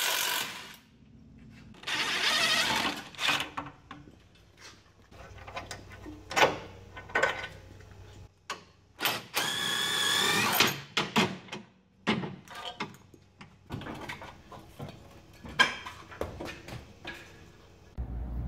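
DeWalt cordless impact wrench with a socket and extension loosening rear suspension bolts, in two main runs about two seconds in and about nine seconds in, the second with a steady whine. Short clinks and knocks of tools and hardware come in between.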